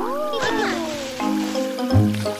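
Cartoon sound effect over bouncy children's background music: a long gliding squeal that rises, then slides slowly down for about a second and a half, with a shorter rising-and-falling glide just after it starts.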